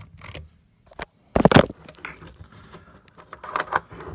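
Handling noise from a camera and lens adapter being moved in the hands: scattered light clicks and knocks, with one louder clunk about a second and a half in and a few more clicks near the end.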